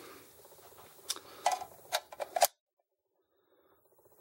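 Brass rifle cartridges and a rifle magazine being handled: several sharp clicks and knocks over about a second and a half, the loudest last, after which the sound cuts off to silence.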